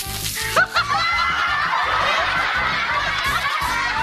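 A crowd laughs loudly and steadily over upbeat music with a steady beat, right after a sharp smack at the very start.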